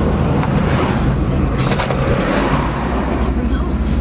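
Vehicle engine and road noise heard from inside the cab while driving, a steady low rumble.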